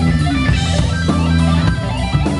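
A live band playing a rock number, loud, with the electric guitar to the fore over bass and drums.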